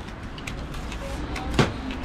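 Steady low rumble of street background with a few small clicks, and one sharp knock about one and a half seconds in.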